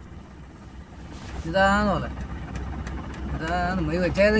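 A person's voice in two short phrases, about one and a half seconds in and again near the end, over a steady low rumble.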